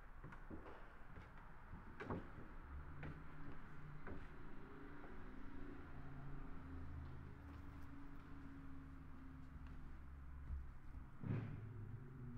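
Slow footsteps on a debris-littered floor, about one a second, with a low steady engine drone from road traffic outside through the middle of the stretch and a louder knock near the end.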